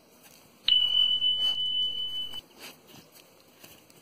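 A single steady high-pitched electronic beep, about a second and a half long, that starts with a click just under a second in and cuts off suddenly. It is likely the sound effect of a subscribe-button overlay.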